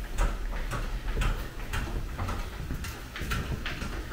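Stationary exercise bike being pedalled: a run of light ticks and clicks, a few a second.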